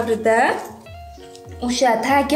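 A woman's voice speaking, with a short pause about a second in where soft background music with steady held notes shows through.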